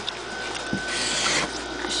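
Marker tip dragged across paper in one stroke, a short scratchy hiss about a second in.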